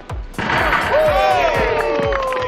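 Background music with a steady beat. About half a second in, a group of people break into excited shouting and cheering over it, with one voice holding a long yell that slowly falls in pitch.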